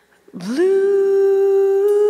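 A woman's voice, about a third of a second in, slides up from low into one long held note, hummed without words, as the vocal line of a jazz ballad closes.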